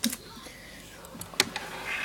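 Two short knocks at the table close to the microphone, one at the start and one about a second and a half in, with faint rustling of movement between them.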